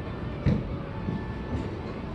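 A golf club striking a ball once, a sharp crack about half a second in, over a steady low rumble of the covered driving range.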